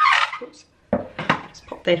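A glass mixing bowl clinking and knocking against a plastic kitchen scale and a wooden board as it is lifted off: a sharp clink at the start, then a few light knocks about a second in.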